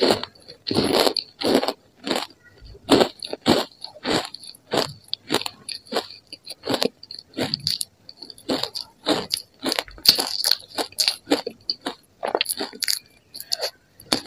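Mouthful of matcha-powdered ice being chewed: a quick, irregular run of crisp crunches, two or three a second.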